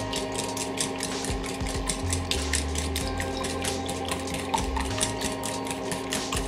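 Wire whisk beating eggs in a small stainless-steel bowl, the wires clicking against the metal in a quick, even rhythm of several strokes a second.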